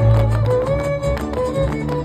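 Live Mexican string band playing folk dance music: strummed guitars with a deep plucked bass line stepping between notes, and a violin carrying the melody.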